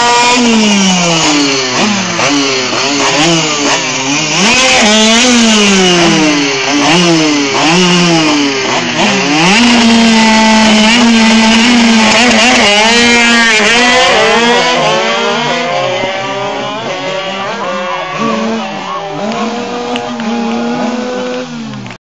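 Two racing mopeds' small two-stroke engines revved in repeated blips on the start line, then held at high revs for a few seconds. About twelve seconds in they launch, rising in pitch again and again through the gears, and fade as they race away down the strip.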